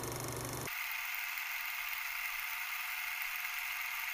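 Steady hiss-like noise. Under a second in, its low rumble cuts off abruptly, leaving a thinner, higher hiss.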